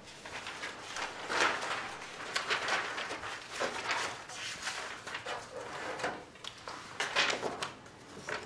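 Rustling and scattered small knocks and clicks from string quartet players settling between pieces, with no instrument playing.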